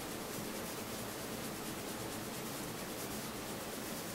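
Steady faint hiss of microphone and room noise, with no distinct sound standing out.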